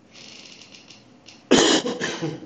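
A person coughs, a short loud cough about one and a half seconds in.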